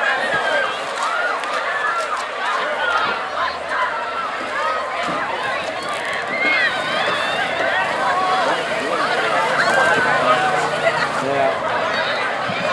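Large crowd of teenagers shouting and screaming, many voices overlapping at a steady level, with no single voice standing out.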